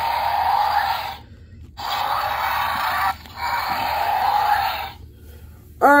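Electronic dinosaur roar sound effects from the Mattel Jurassic World Battle Chompin Carnotaurus toy's small built-in speaker: three roars in a row, each about a second and a half long with short pauses between.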